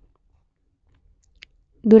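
Near silence in a pause between spoken passages, broken by one faint, brief click about a second and a half in, before a woman's voice resumes near the end.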